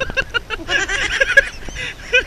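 A man laughing loudly: a quick run of short 'ha' bursts, then a longer, higher stretch of laughter about a second in.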